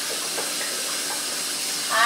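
Bathroom tap running steadily into a sink, a continuous even hiss of water.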